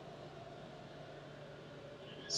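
Faint, steady room noise: an even hiss with a low, constant hum underneath and nothing sudden.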